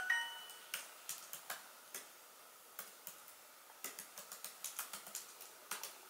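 Typing on a laptop keyboard: irregular runs of light key clicks, with a pause of about a second partway through. A short ringing chime sounds right at the start.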